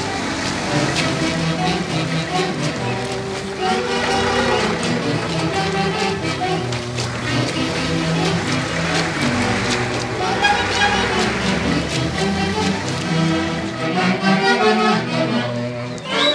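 Huaylarsh dance music played by a band, a dense run of melody over a steady bass line.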